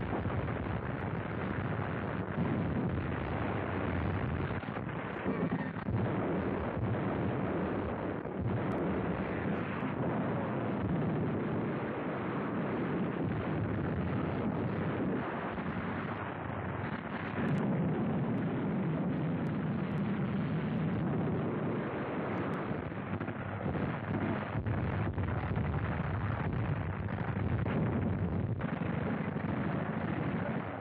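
Battle sounds on an old film soundtrack: a continuous rumble of shellfire and explosions, with occasional sharp shots standing out.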